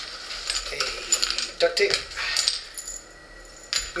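Small gear items and plastic packets rustling and clinking as they are handled and pulled from a backpack pocket: a busy run of light clicks and rustles, a quieter spell, then one sharp click near the end.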